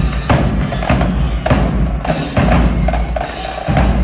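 Marching drumline playing a percussion feature: rapid, crisp snare drum strokes over deep bass drums, with cymbals. The bass drums drop out for a moment near the end, then come back in.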